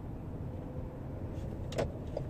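Steady low road and engine rumble inside a moving car's cabin, with a couple of sharp clicks near the end.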